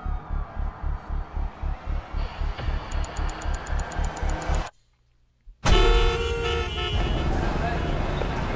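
Trailer soundtrack: a fast, pulsing low beat with rapid ticking building over it. It cuts to complete silence about four and a half seconds in, then a sudden loud hit opens onto city street noise with car horns honking and traffic.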